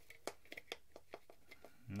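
Faint, scattered plastic clicks and taps, about a dozen over two seconds, as the small feed-slide parts and spring of a hot glue gun are handled and fitted into its open plastic housing.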